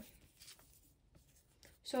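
Faint rustling and light scraping of paper filler cards being picked up and shuffled by hand.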